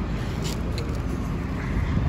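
Steady low outdoor background rumble with a faint click about half a second in.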